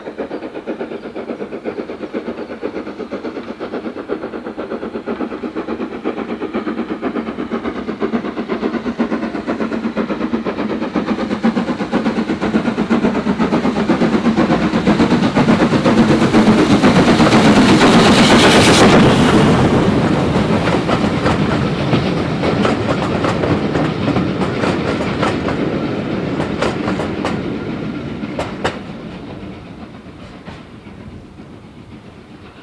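LSWR S15 4-6-0 steam locomotive No. 506 working a train under steam, its exhaust growing louder as it approaches and loudest as it passes close by just past halfway. Then the coaches roll past with a quick run of wheel clicks over the rail joints, and the sound falls away near the end.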